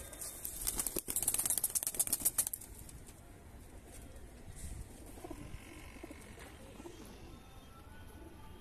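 Domestic teddy high-flyer pigeons: a burst of rapid wing flapping lasting about two seconds near the start, then faint cooing.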